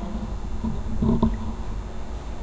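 Steady low room rumble, with a brief faint hum of a voice about a second in and a small click near the end.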